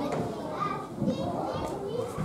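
Young children's voices chattering and calling out over one another, with a high-pitched call about a second in.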